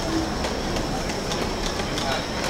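Busy street ambience: a steady wash of traffic-like noise with a brief snatch of a passer-by's voice at the start and a few faint footstep clicks.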